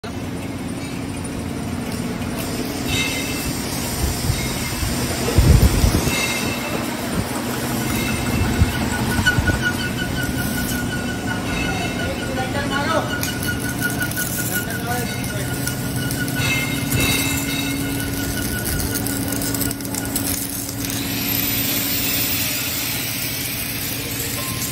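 Factory floor noise: a steady machine hum runs throughout, with a higher steady whine through the middle part, short clattering sounds and indistinct voices. A low thump comes about five and a half seconds in, and a hiss rises in the last few seconds.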